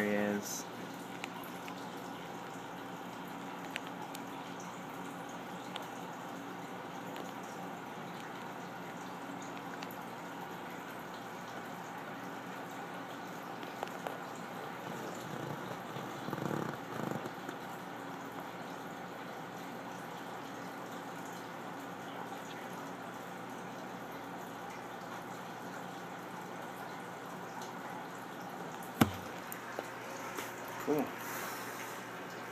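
Steady low hum and hiss with a few faint steady tones running underneath, broken by a brief, slightly louder rustle about sixteen seconds in and a single sharp click near the end.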